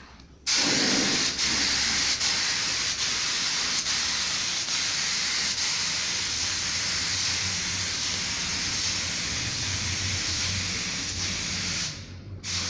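Compressed-air paint spray gun spraying in one long continuous hiss, starting about half a second in and cutting off near the end, with a faint low hum underneath.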